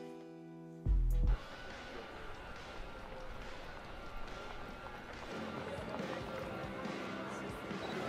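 A held chord ends with a short, deep thud about a second in. Then a music video's soundtrack plays at a low level: a noisy ambient bed with faint voices and small scattered knocks, growing a little louder after about five seconds.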